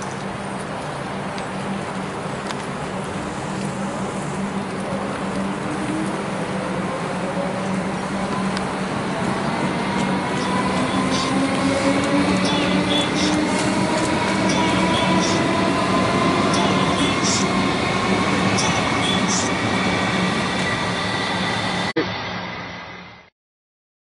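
Electric suburban train accelerating, its traction motors whining in several tones that climb steadily in pitch for about twenty seconds over a steady hum and running noise, with sharp clicks from the wheels on the rails. The sound cuts off suddenly near the end.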